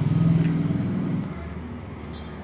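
A motor vehicle's engine running close by, a steady low drone that is loudest in the first second and fades away after about a second and a half.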